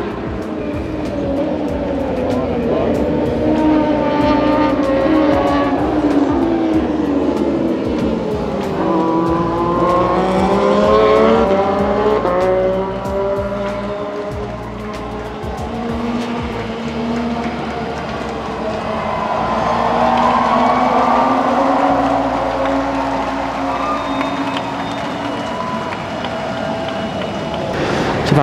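Racing motorcycle engines running, several at once, their pitch sliding down and climbing again over a few seconds at a time.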